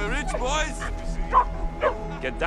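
A young dog yelping and whining in several short rising-and-falling cries, over background music with held notes.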